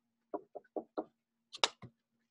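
A series of light knocks or taps, about six over two seconds, irregularly spaced, the one past the middle loudest.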